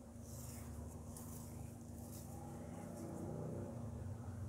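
Faint, steady low hum with a light hiss: quiet kitchen room tone beside a stovetop pot.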